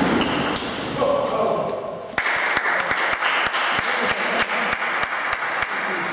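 Table tennis ball clicking off bats and table in a doubles rally, with voices. From about two seconds in, a run of evenly spaced ball taps follows, about three a second.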